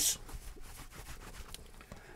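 A cloth rubbing over a smartphone as it is wiped down: faint, irregular rubbing with light handling ticks.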